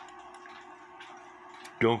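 Faint ticking of a Lux Pendulette clock movement held in the hand, over a low steady hum. A man's voice starts near the end.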